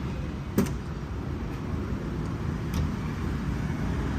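Ford Ranger Raptor's tailgate latch clicking open once, sharply, about half a second in, with a couple of faint ticks later, over a steady low rumble.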